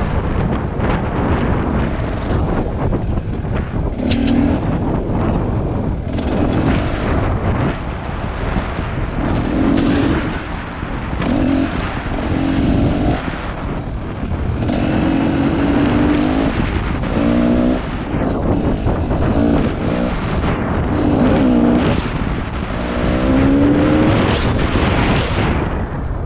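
Dirt bike engine running along a trail, its pitch rising and falling in short bursts as the throttle opens and closes, with a rising rev near the end. Heavy wind rumble and buffeting on the on-board camera microphone, and a few sharp clicks.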